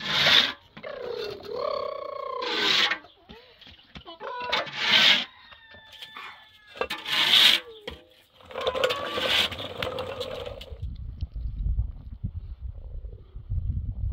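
A plastic toy skateboard's wheels rolling and its load of bricks and wooden blocks scraping over dirt and concrete, in several short rasping bursts. Near the end, a low wind rumble on the microphone takes over.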